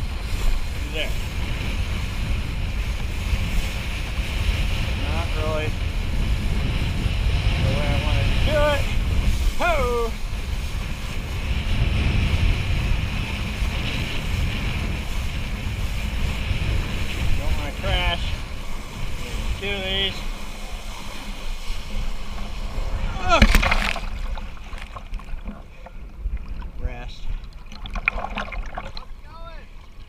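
Wind buffeting the microphone and water rushing past a kiteboard as it rides across the lake, with a few short wordless voice-like glides. About 23 seconds in there is one loud sharp burst, and after it the rushing drops away and it is much quieter.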